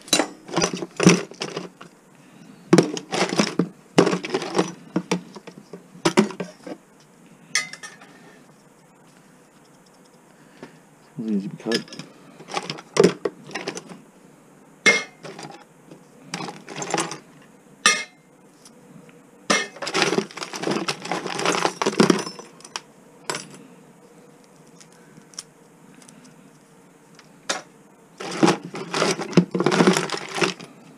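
Small copper and brass scrap pieces clinking and rattling in a plastic bin as they are picked through and sorted by hand. The sound comes in irregular bursts with pauses between them, and a few single pieces give a short ringing clink.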